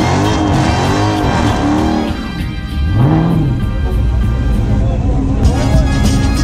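Dodge Charger's Hemi V8 revving hard in a burnout on the drag strip, its revs swinging up and down over and over and then holding higher. Near the end a music track with a beat comes in.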